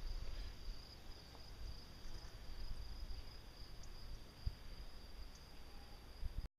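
Faint, steady high-pitched chorus of insects, with a low rumble underneath and a soft thump about four and a half seconds in.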